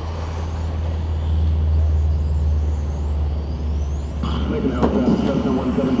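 Electric RC racing cars running on the track: faint high-pitched motor whines that rise and fall in pitch as they pass, over a steady low rumble.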